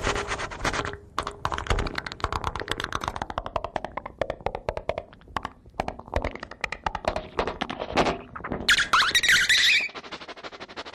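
Sound-poetry recording of the audio-poème kind: a dense, irregular stream of rapid clicks and pops, electroacoustically manipulated, with a burst of harsh high hiss near the end.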